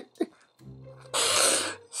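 A man laughing under his breath: a short hum, then a long, loud breathy exhale in the middle.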